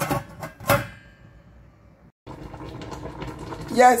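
Stainless-steel pot lid clinking against the pot as it is put on, two ringing strikes in the first second. After a break, a steady hiss.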